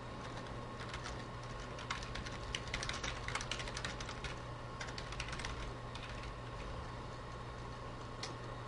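Typing on a computer keyboard: quick runs of keystroke clicks, thinning out in the second half, over a steady low hum.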